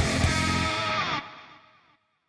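Intro music led by a distorted electric guitar riff with effects; a little over a second in, a note bends downward and the music stops, dying away to silence.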